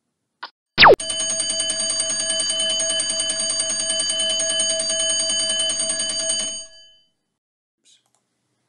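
Countdown timer's alarm sound effect going off as the timer reaches zero: a quick falling swoop, then an alarm-clock bell ringing rapidly and steadily for about five and a half seconds before it stops.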